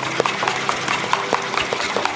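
Thick frying batter being beaten by hand with a utensil in a stainless steel bowl: quick rhythmic clicks of metal on metal, about four or five a second.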